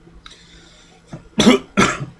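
A man coughing twice into his fist: two loud coughs close together, near the end.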